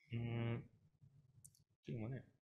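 A man's faint voice: a short, steady-pitched vocal sound of about half a second near the start, and another brief one at the very end, too quiet to be made out as words.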